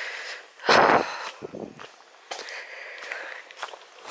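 Footsteps on a rough, stony woodland track, irregular and uneven, with one louder brief rush of noise just under a second in.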